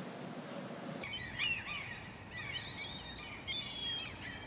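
Birds chirping quietly in the background: a series of short, high, rising and falling calls that begin about a second in.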